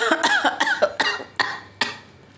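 A quick run of short, irregular vocal bursts: coughing mixed with breaking laughter. The last burst comes near the end.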